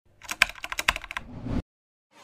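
Rapid keyboard-typing clicks, about ten in a second, followed by a short rising swell that cuts off abruptly.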